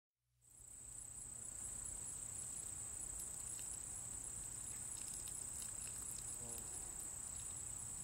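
Insects chirping: a steady high-pitched drone with a regular, rapid pulsing above it, fading in about half a second in over a faint low rumble of background noise.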